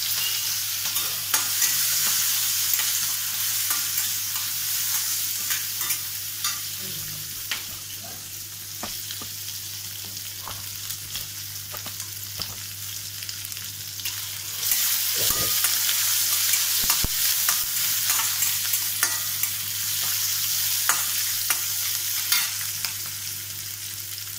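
Chopped shallots and green chillies sizzling in hot oil in a stainless steel kadai, stirred with a metal spatula that scrapes and clicks against the pan. The sizzle is louder in the first few seconds and again from a little past halfway.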